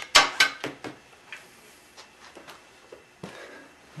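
Swingarm pivot bolt on a BMW F650 motorcycle being knocked home through the swingarm: four quick sharp knocks in the first second, each quieter than the last, then a few faint taps.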